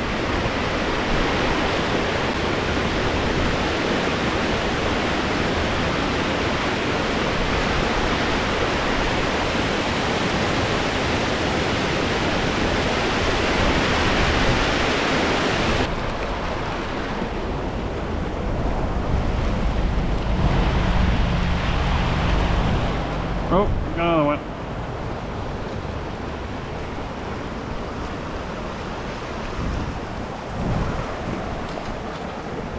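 Mountain brook water rushing down a granite chute into a plunge pool: a loud, steady wash of white water. About halfway through it changes abruptly to a quieter flow over a shallow rocky riffle.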